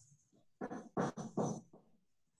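Four short animal calls in quick succession, each well under half a second and less than half a second apart, heard over a video call.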